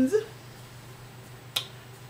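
The tail of a drawn-out spoken "and", then a faint steady hum and a single sharp click about one and a half seconds in.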